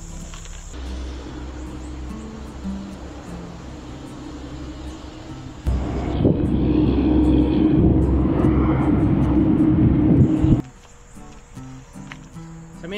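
Background music throughout. From about six seconds in, a loud low wind rumble buffets the microphone of a camera worn by a cyclist riding an e-bike; it cuts off abruptly about a second before the end.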